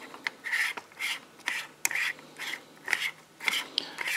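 A threaded T-ring adapter on a small CCD guide camera being screwed by hand onto the T-threads of a telescope flip mirror: a short rasp of metal threads with each twist, about two a second, with one sharp click about halfway through.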